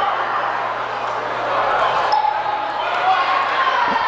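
Crowd chatter filling a high school gymnasium during a stoppage for free throws, with a steady low hum underneath.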